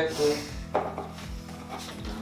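A kitchen knife cutting through a lemon over a plastic citrus juicer, with one sharp knock under a second in and soft handling and rubbing noises after it, over faint background music.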